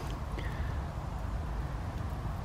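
Steady low rumble of a light breeze on the microphone, with the faint hiss of a small wood fire burning.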